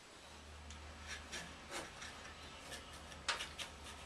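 Faint, scattered rubbing and scraping, a few soft strokes spaced about half a second to a second apart and a sharper one near the end, over a low steady hum.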